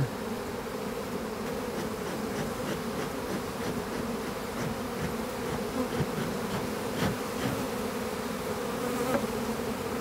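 Honeybees buzzing steadily around an opened hive, a continuous hum of many bees in flight, with a couple of faint knocks.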